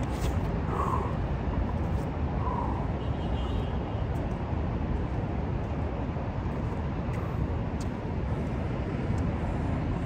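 Steady low rumbling background noise, with two faint short sounds in the first three seconds.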